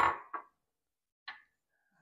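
A few brief, light clicks separated by dead silence.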